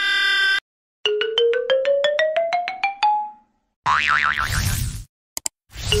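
A comic sound effect: a quick run of short, plucked-sounding notes climbing steadily in pitch, about six a second for two seconds, starting about a second in and again right at the end. Between the two runs there is a brief noisy sound with a wavering pitch, and a short held chord sounds at the very start.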